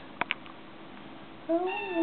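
A Siamese kitten meowing: one drawn-out meow that starts about three-quarters of the way in, rising slightly then falling. It comes after two short clicks just after the start.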